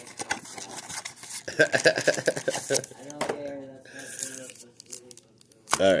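Cardboard and plastic card packaging being handled and torn open in short rustles and clicks, under a voice in the background; a laugh near the end.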